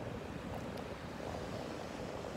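Small one-to-two-foot Atlantic waves breaking and washing up a shallow beach: a steady, even rush of surf.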